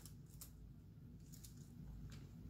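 Near silence with a few faint clicks and light handling noise from a hot glue gun being worked over a small bundle of twigs.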